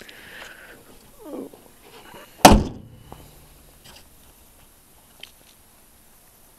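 The hood of a 1985 Oldsmobile Cutlass slammed shut: one loud bang about halfway through, ringing briefly.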